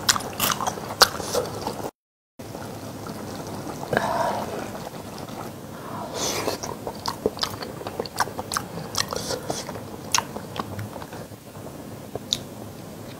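Close-miked chewing of a spicy seafood dish with octopus: wet mouth clicks and smacks, with a short cut to silence about two seconds in.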